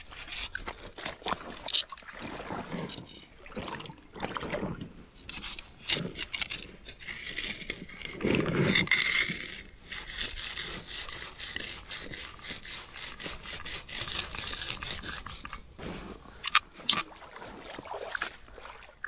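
Fishing tackle being handled: scraping and rubbing with many sharp clicks and rattles, with a louder rustle about halfway through.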